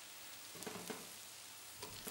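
Food sizzling faintly in a pot on the stove, with a few light clinks of the lid and utensil about half a second to a second in as the pot is uncovered and stirred.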